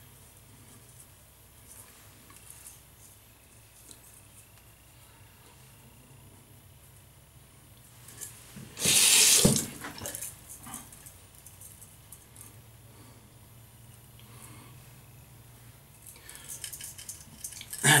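A sink faucet running for about a second midway, water splashing into the basin. Otherwise quiet room tone with a few faint small handling sounds.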